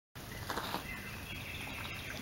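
Faint woodland ambience: a low steady background hiss with faint distant bird calls.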